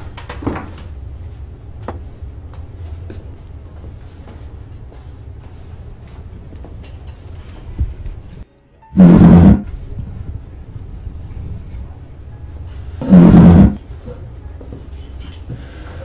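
Two loud, roar-like sound-effect bursts, each about half a second long and about four seconds apart, the involuntary noises that the man is cursed to make.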